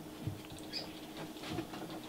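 Faint rustling and scratching of vermiculite substrate and a plastic tub enclosure as they are handled by hand.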